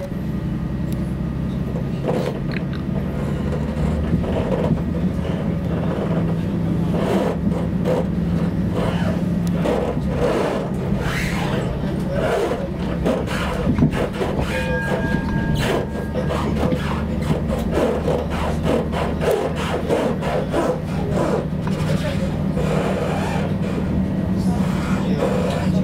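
Running noise heard from inside a moving passenger train carriage: a steady low hum and rumble with many rapid clicks and clatter of the wheels over rail joints and points. A brief high tone sounds about halfway through.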